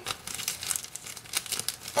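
Plastic zip-top bag crinkling with irregular crackles as it is handled and twisted into a cone.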